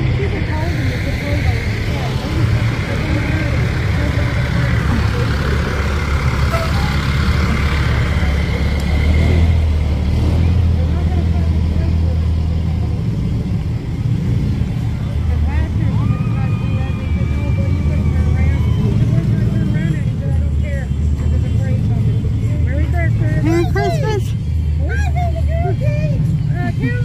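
Pickup trucks towing parade float trailers pass at walking pace on a wet road: a steady low engine rumble with the hiss of tyres on wet asphalt, strongest over the first several seconds. Voices of onlookers come in near the end.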